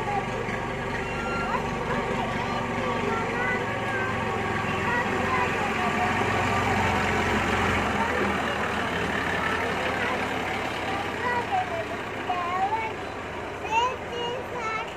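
A tractor's engine running steadily, swelling louder for a few seconds around the middle, with a child's voice over it.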